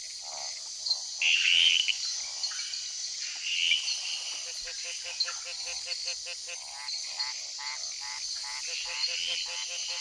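Male gliding leaf frogs calling at night to attract females: short croaking calls, then a quick run of clicking pulses in the middle and again near the end. A steady high insect chorus runs underneath.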